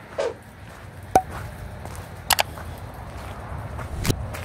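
Footsteps on wet gravel and pavement: a sharp click about a second in and a quick pair of scuffs a little past halfway, over a low steady outdoor rumble.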